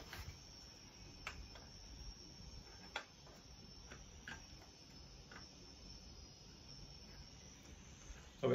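Faint, scattered ticks and light clicks as a metal counterweight shaft is turned by hand and screwed into a telescope mount's declination bracket, over a faint steady high whine.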